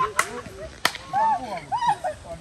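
Two sharp cracks, about two-thirds of a second apart, with laughter and voices around them.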